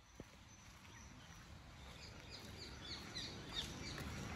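Small birds chirping outdoors: short, high calls that fall in pitch, coming several times a second from about halfway through, over a low rumbling noise that slowly grows louder.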